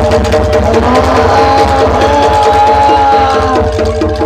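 A Javanese jaranan dor ensemble plays loud live music. A fast, driving low drum beat runs under held gong and metallophone tones, with a melodic line that glides and then holds above them.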